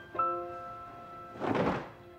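Soft piano notes of background music, with a single muffled thump about a second and a half in as a coat is tossed onto a sofa.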